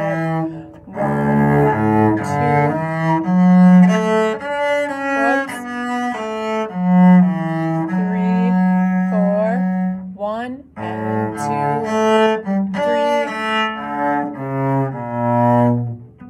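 Solo cello bowing a slow melody in its low-middle register, one sustained note after another, with a brief pause about two-thirds through.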